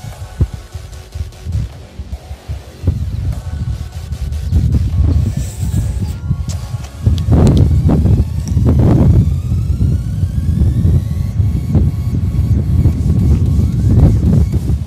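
Wind buffeting the microphone in gusts, a low rumble that grows stronger about halfway through.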